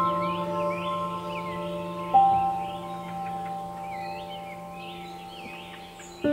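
Calm ambient music: sustained bell-like notes ring on and slowly fade, with a single new note struck about two seconds in. Birds chirp over it throughout.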